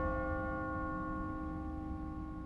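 A single struck bell-like chime ringing on with several clear tones and slowly fading.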